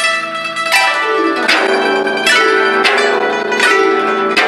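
Guzheng (Chinese zither) played solo: a run of strong plucked sweeps across the strings, a little under a second apart, each left ringing over the sustained notes.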